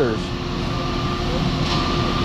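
Ready-mix concrete truck running steadily with a low drone while it discharges concrete down its chute. A high beep comes on and off about once a second.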